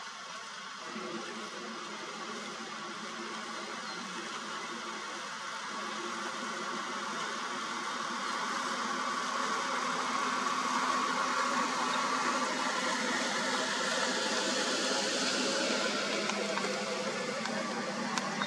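Vehicle engine idling: a steady low hum under a hiss, slowly growing louder.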